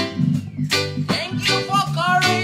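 A live band playing a reggae-style song, with regular strummed chords on plucked string instruments and a sung melody.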